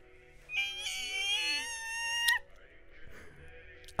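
A man's high-pitched squeal of excitement, held with a slight rise for nearly two seconds and cut off sharply, over soft background music.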